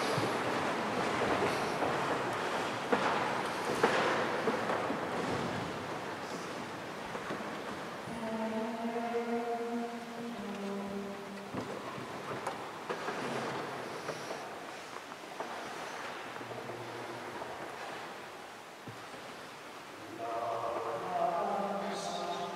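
A mixed church choir between pieces: a louder sound dies away at the start, then low rustling and murmur in the reverberant church. The choir sounds a few held notes about eight seconds in, then begins singing near the end.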